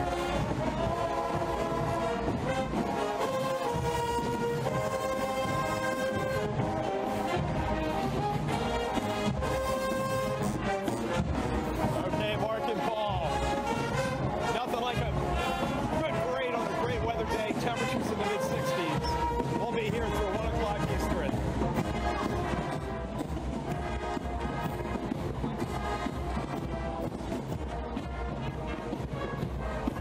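A high school marching band playing: brass with sousaphones and trumpets holding chords over drums. The band gets a little quieter about twenty-two seconds in.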